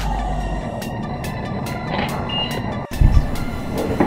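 Background music with a steady beat, which cuts out briefly near three seconds and comes back with a deep bass hit.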